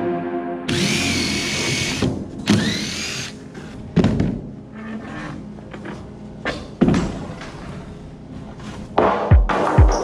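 A handheld circular saw's motor whines in short runs, spinning up about a second in and again near three seconds, with a few sharp knocks of wood. Electronic background music plays underneath, its bass beat coming in strongly near the end.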